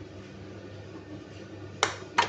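A single sharp click near the end as a ceramic dish is knocked against the kitchen counter, over a low steady hum.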